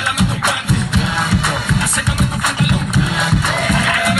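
Loud hip hop dance music with a heavy, steady beat.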